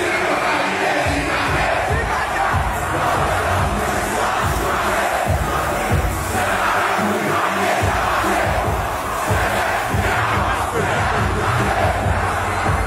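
A large concert crowd shouting and cheering loudly, steady throughout, over music from the PA with a repeated heavy bass pulse.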